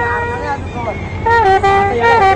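Brass trumpet played solo: a held note that ends just after half a second in, then, after a short pause, a new phrase that starts about a second and a half in and steps down in pitch.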